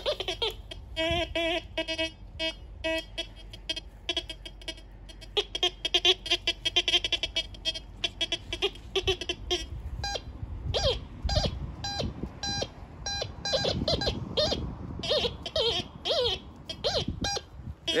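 TX-850 metal detector beeping in a string of short pitched tones as its coil is swept over the soil pile and into the hole; in the second half the tone rises and falls in pitch. The signal shows a metal target still in the pit.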